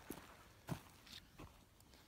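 Mostly near silence with three faint short clicks, the loudest about a second in: a CZ-27 pistol being handled as it is lifted out of its soft case.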